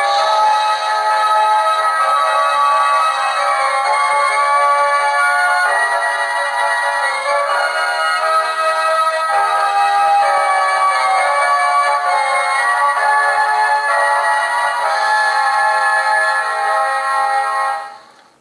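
Fisher-Price Little People Aladdin's Magic Carpet toy playing its electronic tune through its small built-in speaker, set off by pressing down the Abu figure button. The melody sounds thin, with no bass, runs at a steady loud level and stops suddenly right at the end.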